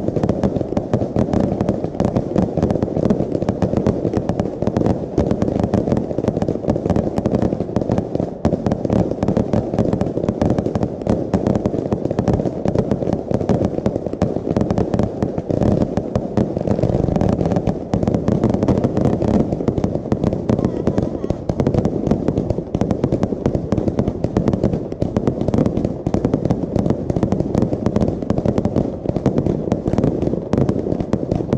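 Aerial fireworks display firing a dense, continuous barrage: launches and shell bursts bang in rapid, overlapping succession with no pause.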